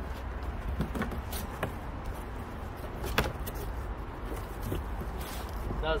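A cardboard box being opened by hand and the plastic-wrapped part inside handled: scattered rustles, scrapes and crackles, with one sharper crackle about three seconds in, over a steady low rumble.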